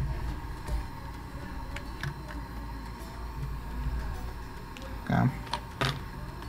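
Low steady hum of bench equipment with a few faint clicks of tools and hands handling a phone logic board, and a brief voice sound near the end.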